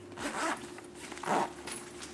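Metal zipper on a small fabric bag being pulled, two short zips about a second apart.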